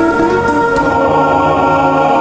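Background choral music: a choir singing long held chords.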